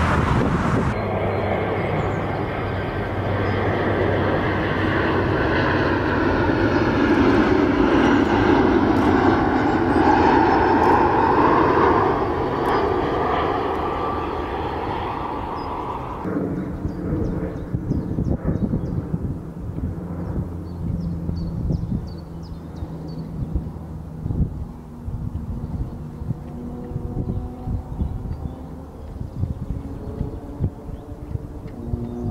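Distant jet airliner at cruise altitude heard from the ground, taken here for the Airbus A380 in view: a broad rumble with slowly sweeping tones that swells to its loudest after several seconds, then fades. About halfway through it cuts abruptly to a quieter, steadier jet drone with some crackle.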